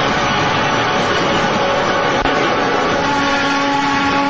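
Cartoon energy-beam sound effect: a loud, steady rushing noise as a glowing ki blast streaks upward. Sustained music notes come in near the end.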